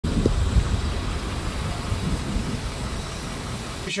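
Wind buffeting the microphone, an irregular rumbling rush heaviest in the low end, that cuts off abruptly near the end.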